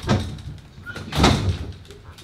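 Two dull thuds about a second apart, the second one louder.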